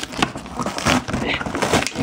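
Clear plastic packing tape being peeled off a cardboard box: a continuous crackling rasp full of sharp little clicks.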